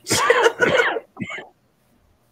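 A woman laughing: one short, breathy burst lasting about a second, with a brief fainter trailing sound after it.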